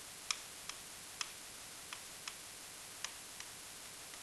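Faint, irregular ticks of a stylus tip tapping on an interactive whiteboard as a word is handwritten, about seven in four seconds over a steady hiss.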